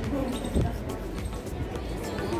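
A few dull knocks on a plastic laser-printer toner cartridge, the loudest about half a second in, as it is handled and brushed clean for refilling.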